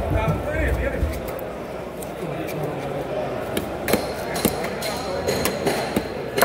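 Several sharp knocks from a long fish knife cutting into a whole tuna and striking the cutting board, mostly in the second half, over a murmur of background voices.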